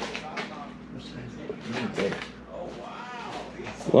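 Quiet, indistinct talking in the background, with a few light handling clicks.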